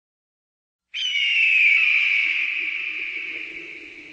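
A single long, high screech-like cry that starts suddenly about a second in, slides slowly down in pitch and fades away over about three seconds, with faint low notes coming in beneath it near the end.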